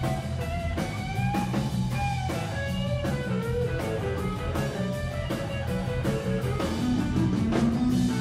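Live electric blues band playing an instrumental passage: electric guitar plays lead lines with bent notes over a steady electric bass line and a drum kit.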